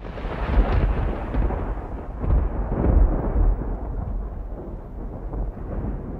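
A deep rolling rumble that starts suddenly out of silence, swells a few times in the first three seconds, then slowly dulls as its upper hiss fades away.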